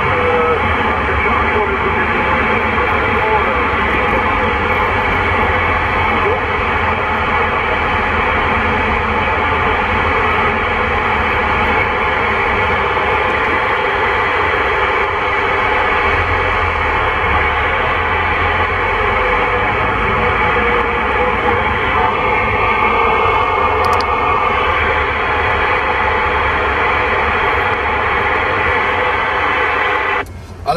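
President Lincoln II+ radio on channel 19 AM putting out a steady, loud wash of static and interference, with whistling carrier tones and unreadable voices buried in it. This is heavy QRM, in which no station can be heard clearly.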